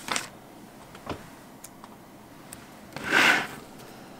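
Sticker sheet and planner paper being handled: a couple of faint taps, then a short paper rasp about three seconds in, as a sticker is peeled off or paper slides against paper.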